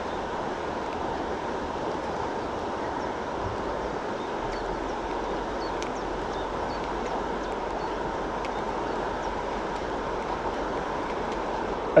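Steady rushing of a flowing river, an even noise that does not change.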